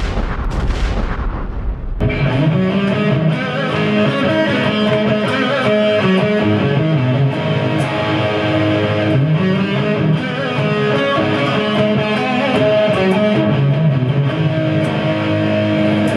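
Semi-hollow-body electric guitar playing a riff, starting about two seconds in. Before it, a noisy booming sound effect fills the first two seconds.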